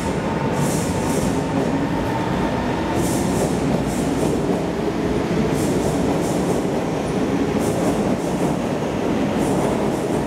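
Singapore MRT North South Line electric train running past on the viaduct: a steady rumble of wheels on rail, with short bursts of high hiss every second or two.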